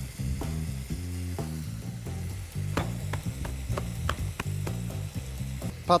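Beef and onions frying in a pan, a faint sizzle under background music with a low bass line. A few light taps about halfway through as diced eggplant is laid out on paper towel.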